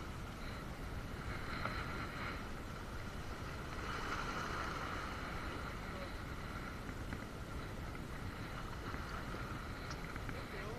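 Steady wash of small waves breaking against rocks, with wind noise on the microphone.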